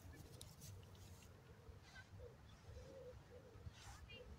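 Near silence: faint outdoor air with a few soft rustles, one just before the end as the dog passes close to the microphone.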